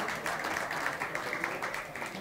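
A small audience applauding a won set, a dense patter of hand claps that thins a little toward the end.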